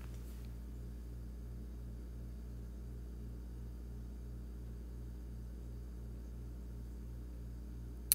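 Steady low electrical hum, with a faint even pulsing a few times a second in its lower tones.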